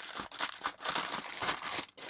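A clear plastic kit bag around a black plastic sprue crinkling as it is handled and lifted, an irregular crackle that breaks off just before the end.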